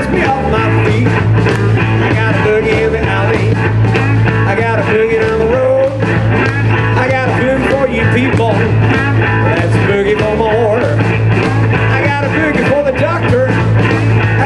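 Live blues-rock band playing loud and steady, with electric guitar, drums and a heavy bass line.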